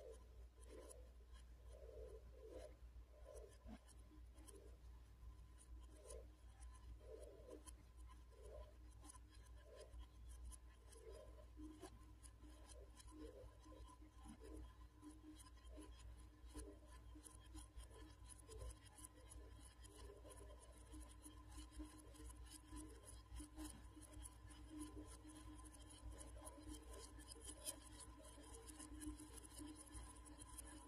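A small red metal fan running, very faint: a steady low hum with thin steady tones and soft irregular scratchy pulses about once a second.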